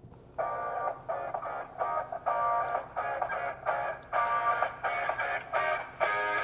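Music played through the Skoda Kushaq's in-car sound system for a music test. It starts about half a second in and has a steady rhythm of roughly two chord strokes a second.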